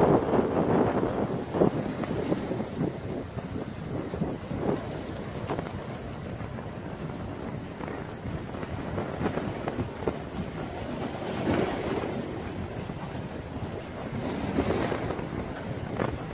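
Wind buffeting the microphone over choppy lake water lapping and washing against shoreline rocks, with a few brief splashes and slow swells in loudness.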